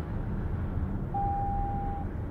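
Steady low road and tyre rumble inside the cabin of a 2023 Lexus RX 500h cruising at highway speed. About a second in, a single steady electronic beep joins it and lasts about a second.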